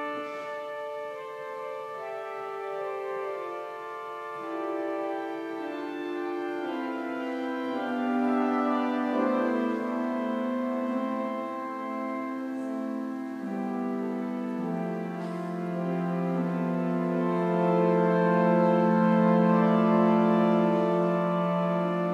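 Murray Harris pipe organ playing slow, sustained chords, the lowest line stepping down in pitch through the passage as the sound swells louder in the second half.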